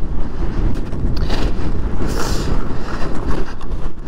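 Strong gusting wind buffeting the microphone: a loud, uneven rumble that swells and dips.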